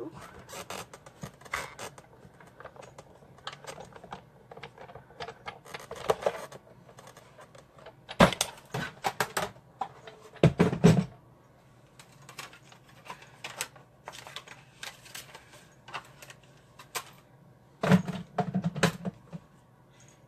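A Big Shot die-cutting machine being cranked and its cutting plates and die being handled: a run of small clicks and plastic clacks, with louder knocks around eight seconds in, just after ten seconds, and near the end.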